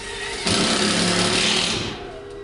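A handheld power tool runs in one burst of about a second and a half, a loud hissing buzz over a steady low hum, then stops.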